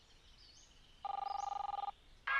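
Ringing tone of an outgoing cell phone call: after a second of quiet, one ring of nearly a second, two steady tones with a fast pulsing warble.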